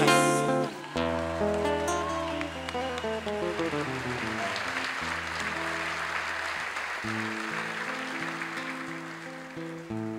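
Live band playing an instrumental song introduction, with sustained low notes under a stepping run of notes, while audience applause swells and fades in the middle.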